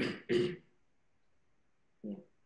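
A person clearing their throat: two short, rough bursts in the first half second.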